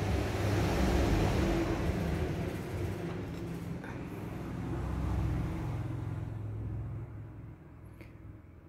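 A low rumble with a steady hum, like a road vehicle passing. It swells twice and fades out near the end.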